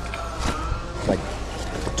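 Steady low hum of a large, busy store, with faint voices in the background and nylon fabric rustling as a bag is pulled from a bin.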